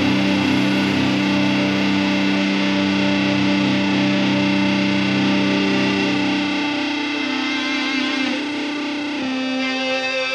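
Instrumental drone doom metal: a Slick SL-55 electric guitar in drop-C tuning through heavy Triangle Fuzz distortion on a Line 6 POD Go, holding long sustained notes. A lower note drops out about two-thirds of the way through, and the held note shifts to a slightly lower pitch near the end.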